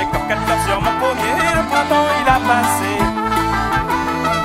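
Live Breton fest-noz dance music from a small band led by a diatonic button accordion, over a steady low drum beat.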